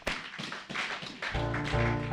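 Scattered clapping from a congregation acclaiming the preacher's words. A little over a second in, a sustained chord of backing music starts, several notes held steady.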